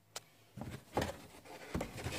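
Light handling sounds: a single sharp click just after the start, then a few soft knocks and rustles of hands and the camera moving around the trunk lid's plastic trim.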